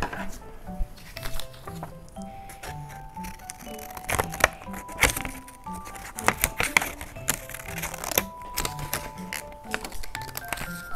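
Background music with a simple melody, over paper rustling and crinkling and small scissors snipping through paper in short sharp clicks.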